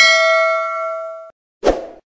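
Notification-bell sound effect from a subscribe-button animation: a bright metallic ding with several ringing tones that cuts off suddenly about a second and a half in, then a short burst of noise near the end.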